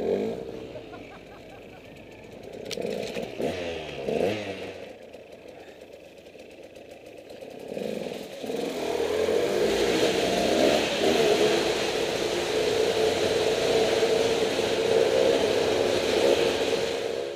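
A vehicle engine revs in two short rising-and-falling bursts. From about eight seconds in it runs loud and steady at high revs under load.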